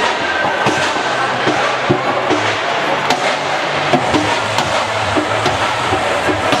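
Sports-hall sound of an indoor handball match: a steady background of crowd noise with music underneath, broken by sharp knocks and thuds every second or so, such as the ball bouncing and striking on the court.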